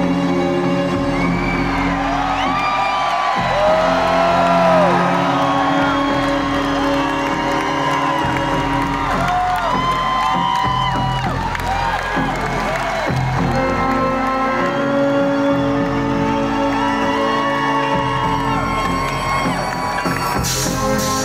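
Concert crowd cheering and whooping, many short shouts rising and falling in pitch, over music with long held chords.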